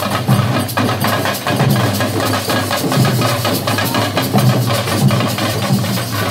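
Dollu Kunitha troupe beating many large dollu barrel drums with sticks together in a fast, dense, steady rhythm.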